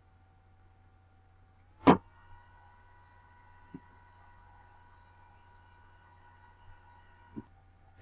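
Computer mouse clicks: one sharp click about two seconds in, then two fainter clicks later, over a faint steady electronic whine that steps up in pitch just before the first click.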